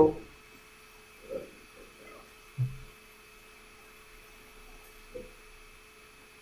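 Quiet room tone with a steady electrical hum during a pause in a lecture. Three brief faint voice-like sounds break it, the clearest a short low murmur about two and a half seconds in.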